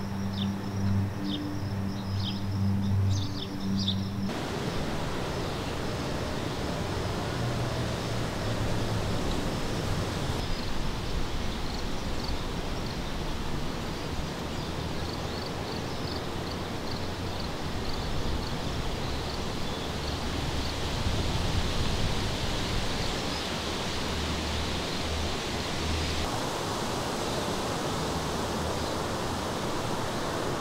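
Outdoor nature ambience: a steady rushing noise with faint, scattered small bird chirps. For the first few seconds a low steady hum sits under brighter bird chirps.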